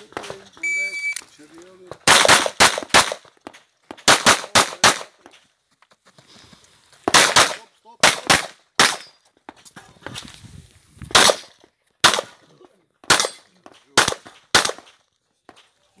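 An electronic shot timer gives its single start beep, then a competition pistol fires rapid strings of shots: two fast bursts of four or five, then pairs and single shots spaced through the rest, as the shooter moves through an IPSC stage.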